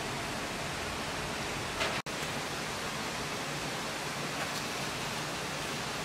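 Steady, even hiss of outdoor background noise, broken by a very short drop-out about two seconds in.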